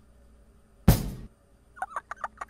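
Cartoon sound effects in an animated children's song: one loud crash-like hit about a second in that dies away quickly, then a fast run of short squeaky chirps near the end.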